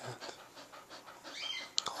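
A dog panting at close range, open-mouthed, with a sharp click near the end.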